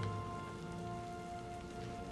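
Quiet film score of long held notes over a steady hiss, with a few faint ticks.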